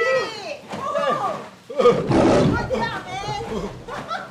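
Excited whooping and laughter from two people celebrating a win, with a harsh, roar-like burst about two seconds in.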